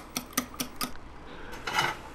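A fork beating eggs in a bowl, clicking against the bowl about four to five times a second, stopping about a second in. A brief soft rustle follows near the end.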